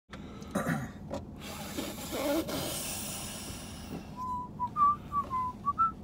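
A man whistling a short tune: a string of clear notes hopping up and down, starting about four seconds in. Before it there is a noisy rustle with a few brief vocal sounds.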